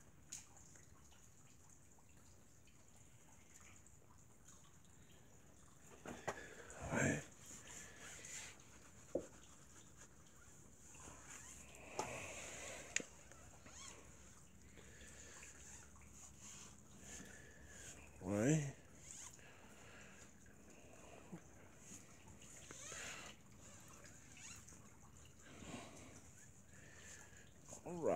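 Quiet rubbing and handling sounds of a foam sponge applicator wiping tire dressing onto a tire sidewall, broken twice by a brief voice-like sound.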